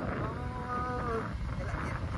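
A man's drawn-out vocal call, held for just under a second and falling in pitch at its end, over the rumble of wind on the microphone from a moving motorbike.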